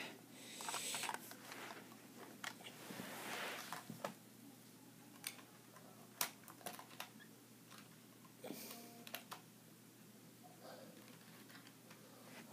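Faint clicks and rustles of a Bachmann Gordon model train locomotive being handled by hand and set onto its track: the wheels are being put on the rails, and the engine's motor is not running.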